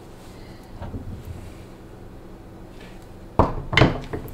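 Two loud knocks about half a second apart near the end, over a faint steady hum.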